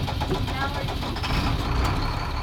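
Scattered outdoor voices chattering over the low, steady rumble of an idling vehicle engine, the kind of sound heard when school lets out.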